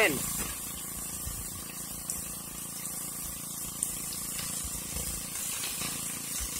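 Pump-fed water spraying from a sluice box's spray bar and splashing down the riffles and off the end of the box in a steady hiss, with a faint steady hum from the pump underneath.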